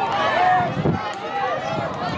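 Several voices shouting and calling over one another outdoors at a lacrosse game, from players, coaches or spectators, with no clear words.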